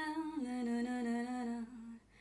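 A woman's voice humming a slow wordless melody, unaccompanied, in long held notes. It steps down in pitch about half a second in and grows softer just before the end.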